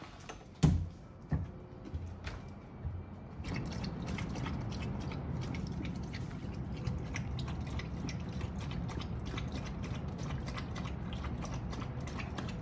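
A door knocking open as a border collie tugs the rope on its knob, the loudest sound, about half a second in. Then, from about three and a half seconds in, the border collie lapping water from a stainless steel bowl: rapid, even clicking laps.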